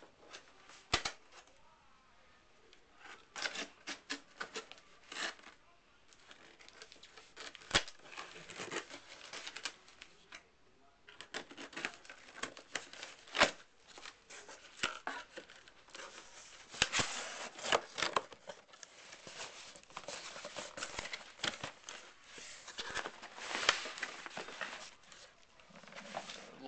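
Packing tape and plastic wrap on a cardboard box being slit with a knife and torn off, and the cardboard flaps pulled open, in irregular bursts of tearing, crinkling and sharp clicks.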